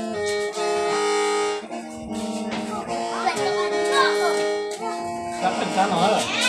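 Hmong qeej, a bamboo free-reed mouth organ, being played: several reed notes sound together over a steady low drone, with the upper notes changing every second or so.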